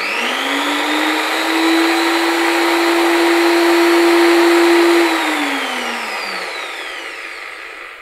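Double-insulated corded electric drill running free: its motor whine rises as it spins up, holds a steady pitch for a few seconds, then falls away as it winds down after about five seconds.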